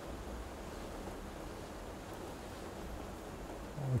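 Faint, steady background noise with no distinct sounds in it.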